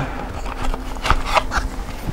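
About five short, light clicks and knocks as stroller adapters are worked onto the frame of an UPPAbaby Vista stroller.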